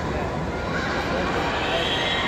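Several people shouting at once during a kabaddi tackle, their voices rising and falling.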